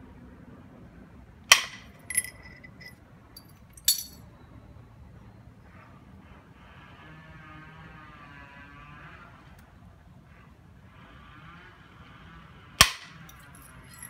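Flintknapping percussion: a hand-held percussor striking the edge of a stone piece being thinned from a nodule. There are four sharp cracks, three in the first four seconds and the loudest near the end, one of them with a short ring.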